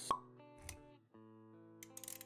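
Intro sound design: a sharp pop just after the start, then music with held notes.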